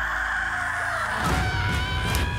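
A harsh, raspy yell lasting about a second. Music with a low pulsing beat and held tones comes in just after.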